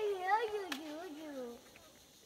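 A young child's long, drawn-out whining vocalization, high and wavering, sliding down in pitch before it fades out. A single short click sounds under it.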